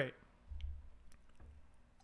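A low, dull thump about half a second in and a weaker one a little later, with faint scattered clicks, as a drinking glass is picked up and raised to drink.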